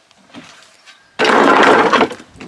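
A steel-framed wooden stair section thrown onto a scrap pile of wood and metal: a sudden loud crash a little over a second in, with rattling that lasts under a second.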